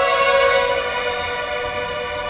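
Youth string orchestra holding a sustained chord, the bowed notes steady with no breaks.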